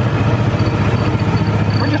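Golf cart driving along a paved street: a steady low hum from its drive, with a faint high whine over it.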